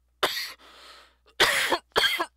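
A person coughing: a sharp cough, a breath drawn in, then a quick run of harder coughs near the end.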